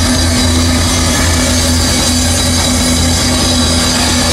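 Live rock band holding a loud, steady droning chord on amplified instruments, with no beat or melody changes.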